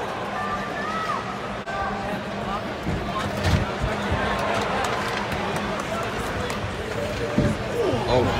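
Ice hockey arena heard from rinkside: a steady hubbub of crowd and players' voices, with a few dull knocks of sticks, skates and puck against the boards, the strongest about three and a half seconds in and near the end.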